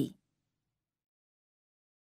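Near silence: a pause in a recorded voice, with only the end of a spoken word in the first moment.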